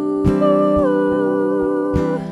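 Women's voices holding a wordless close harmony, one line stepping down in pitch about a second in, over a small acoustic guitar strummed a few times.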